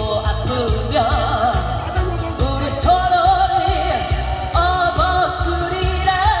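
A woman singing a song into a microphone, holding long notes with a wide vibrato, over amplified instrumental music with a steady beat.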